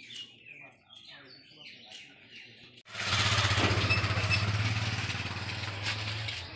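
Faint bird chirps, then an abrupt change about three seconds in to a loud, steady engine running close by, a low even hum over rushing noise.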